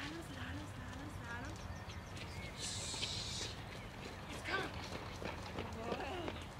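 Faint, indistinct human voices with no clear words, and a brief hiss about three seconds in.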